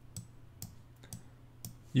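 Computer mouse clicking about four times, roughly half a second apart, over a faint steady low hum.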